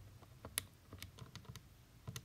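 Faint, irregular clicks of keys being pressed, about eight in two seconds, the sharpest a little past half a second in.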